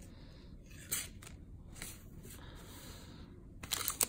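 Soft handling of trading cards and a foil booster pack, with a small knock about a second in and a quick run of crinkles from the foil wrapper near the end as the pack is picked up.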